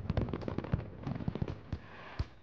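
Fireworks bursting and crackling: many sharp pops in quick succession, thinning out near the end.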